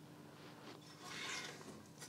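Quiet shop room tone with a faint, brief rustle about a second in, from the borescope's cable sliding as the probe is drawn back up out of the engine's oil passage.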